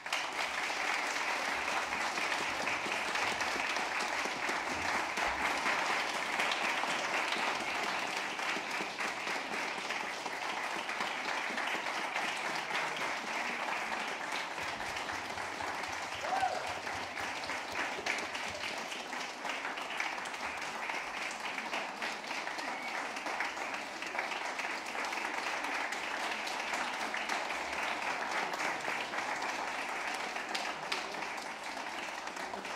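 Audience applause that breaks out suddenly after a moment of silence and keeps going steadily, easing a little toward the end, with a few voices calling out among the clapping.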